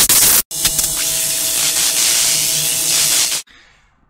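Loud hissing sound effect over an edited title card: a short burst about half a second long, then a steadier stretch of about three seconds that stops suddenly, with a faint steady tone inside it.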